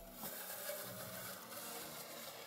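FJDynamics FV2000 robotic lawn mower driving across grass under manual control from a phone: a faint, steady hum and hiss from its electric drive.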